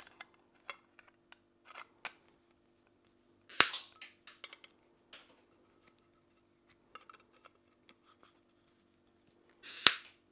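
Side-cutting pliers snipping the protruding shanks off small rivets push-fitted through a brass panel: a sharp snap about three and a half seconds in and another near the end, with lighter clicks of the cutters between.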